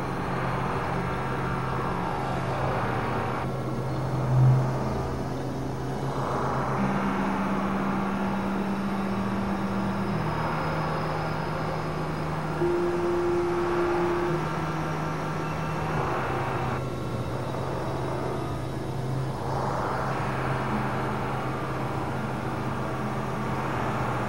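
Experimental synthesizer drone music: low held tones that step to new pitches every few seconds over a continuous rushing noise wash, which thins out twice. A short, louder low swell comes about four seconds in.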